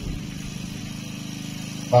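A small engine idling steadily: an even, low hum with a fine rapid pulse.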